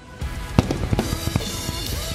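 Acoustic drum kit played hard along with a recorded nu metal song. After a quiet passage, the drums and the full band crash in together about a fifth of a second in, with rapid kick drum and cymbal hits.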